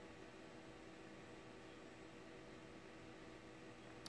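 Near silence: faint steady hiss and hum of room tone.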